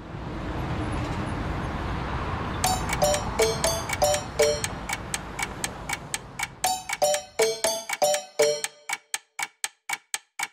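Instrumental song intro: a low rumbling swell, then clock-like ticking, about three or four ticks a second, with short plinked notes on some of the ticks. The rumble fades out near the end, leaving bare ticks.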